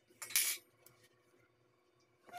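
A metal fork clattering briefly, once, about a third of a second in.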